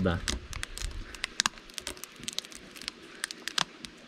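Knife blade worked along the joint between wooden jataí hive modules, cutting through the sticky propolis seal and the acetate sheet: irregular crackling and sharp ticking clicks.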